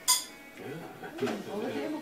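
A single sharp clink of cutlery striking a dish, with a brief ringing, just after the start, followed by voices.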